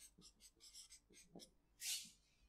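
Felt-tip marker writing on flip-chart paper: a series of faint, quick scratchy strokes, then a short louder hiss near the end.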